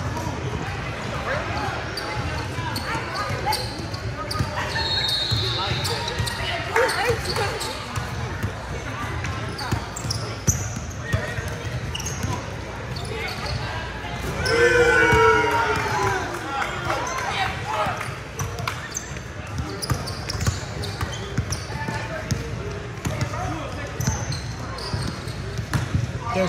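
A basketball bouncing on a hardwood court during play, with voices of players and onlookers echoing in a large gym. A loud shout rises about fifteen seconds in.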